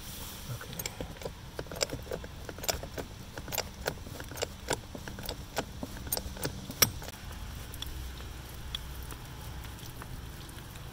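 A hydraulic bottle jack being hand-pumped under a wooden beam as it takes the load of a garage, giving irregular sharp metallic clicks and creaks, about one or two a second, with one louder snap about two-thirds of the way through.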